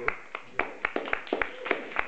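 A small audience clapping: sharp, separate claps, not quite in time, at about five a second.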